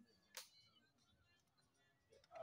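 One sharp click about half a second in, a flat draughts piece set down on the wooden board; otherwise near silence.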